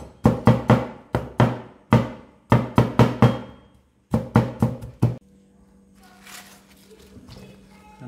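Cleaver chopping peeled garlic cloves on a wooden cutting board: quick runs of sharp chops, several a second, that stop about five seconds in. Faint handling sounds and a low steady hum follow.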